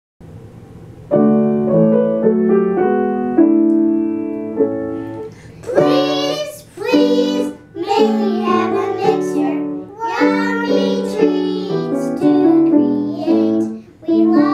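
An upright piano plays a short introduction of chords, and about five and a half seconds in young children start singing a song over the piano accompaniment.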